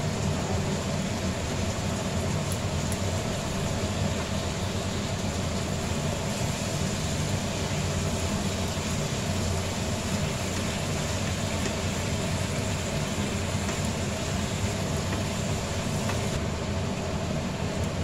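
A steady hiss with a low hum underneath, like a kitchen fan or a gas burner, running evenly throughout. A spatula clicks faintly a few times against a frying pan as a thick fish-bone curry is stirred.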